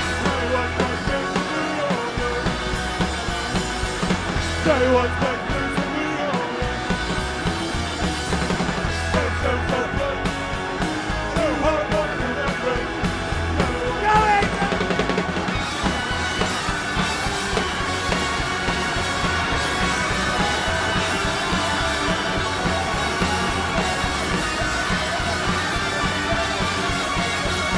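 Rock band playing live through a PA, with electric guitars, upright bass and drums. A sung vocal line runs over the band for about the first half, then the playing carries on without it.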